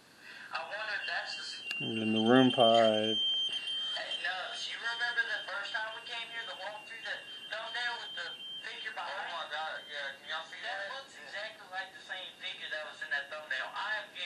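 Playback of an EVP session recording through a handheld digital voice recorder's small speaker: indistinct voices, with a loud buzzy tone about two seconds in and a thin high whine lasting several seconds.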